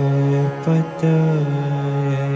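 A man singing a Hindu devotional chant, holding long steady notes that break briefly twice.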